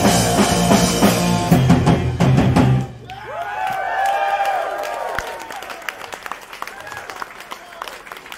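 Live punk rock band with electric guitars, bass and drum kit playing loud, ending a song abruptly about three seconds in. The crowd then cheers and whoops, with scattered clapping that fades toward the end.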